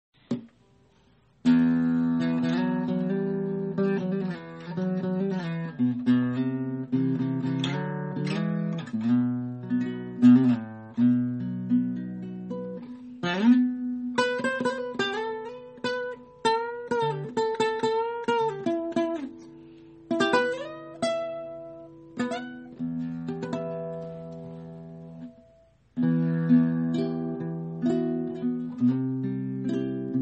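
Solo acoustic guitar playing a slow chordal intro, its notes left to ring. The playing dies away briefly a few seconds before the end, then starts again.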